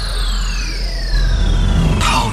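Production-logo intro sound effects: a loud whoosh with two high whistling sweeps falling steadily in pitch over a heavy deep rumble.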